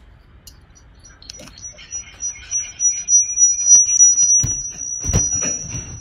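A steady high-pitched whine sets in about a second in and holds, over scattered clattering, with two heavy thumps near the end.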